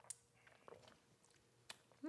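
Near silence with a few faint mouth sounds of people sipping and swallowing juice from glasses: a sharp click just after the start and softer ones later.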